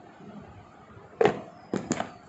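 A clear plastic lid being pressed and snapped onto a plastic bowl: a sharp plastic click about a second in, then two more clicks close together near the end.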